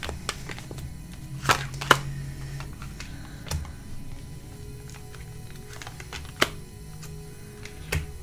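Tarot cards being handled: a few sharp clicks and snaps, the loudest two close together about a second and a half in, others scattered later, over soft background music.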